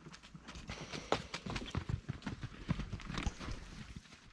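Cattle hooves moving over dry, sandy corral ground: a run of irregular knocks and dull thuds, a little busier from about a second in.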